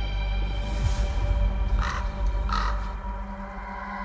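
A crow-family bird cawing twice in quick succession, about halfway through, over a dark, sustained music drone with held tones.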